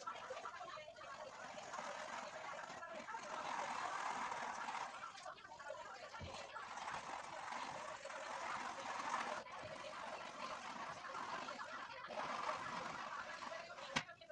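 Indistinct voices talking in the background, with no clear words, sounding thin with no low end.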